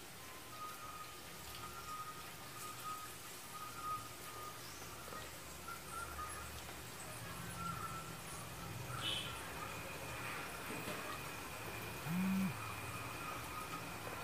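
Masala vadas deep-frying in hot oil in a kadai, the oil sizzling steadily, with faint high tones coming and going and a short low hum about twelve seconds in, the loudest moment.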